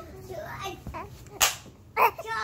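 A single sharp snap or clack about one and a half seconds in, amid faint small voice sounds.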